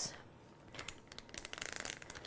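Plastic zip-top bag crinkling as it is handled: a run of faint crackles that grows denser near the end.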